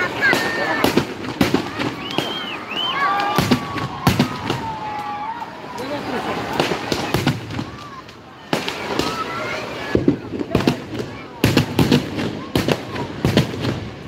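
Firecrackers packed in a burning Ravana effigy bursting in rapid, irregular cracks and bangs, coming thickest in a dense volley near the end. Under them runs the chatter and shouting of a large crowd.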